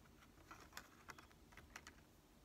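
Near silence: room tone with a scattering of faint, short clicks.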